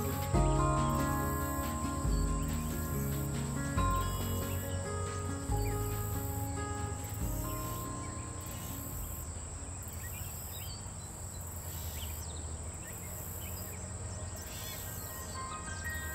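Insects chirping in a steady chorus: a continuous high buzz with a higher trill pulsing in regular waves every second or two. Soft background music with low bass notes plays over it and fades out about halfway through.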